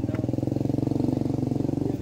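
An engine idling steadily, a low, even, rapidly pulsing hum.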